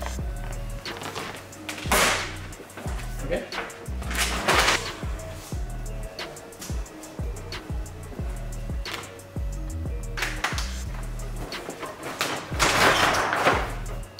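Background music with a steady bass line, over which come several short swishing scrapes, the loudest near the start, midway and near the end: a squeegee being pushed over gloss vinyl wrap film to work it into a panel recess.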